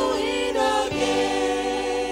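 Church choir singing a chorus in held, sustained notes with a slight vibrato.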